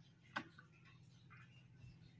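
Very quiet hand-scrubbing of a plastic jug with a soapy cloth: faint short rubbing sounds, with one sharp click about half a second in.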